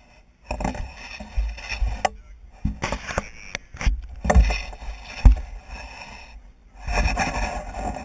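Radio-controlled rock crawler trucks driven in bursts of throttle over rocks: a small electric motor whining with tyres and chassis scraping and knocking against stone, in about four bursts with several sharp knocks.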